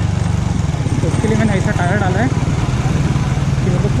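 Bajaj Pulsar 135's single-cylinder engine running steadily at low speed as the motorcycle rolls slowly over a dirt road shoulder.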